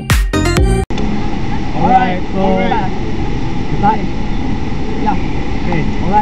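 A pop song with a beat cuts off abruptly about a second in, giving way to the steady rushing roar of a large indoor waterfall, with scattered voices of a crowd over it.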